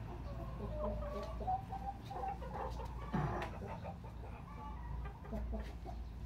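Chickens clucking: a scattering of short calls throughout.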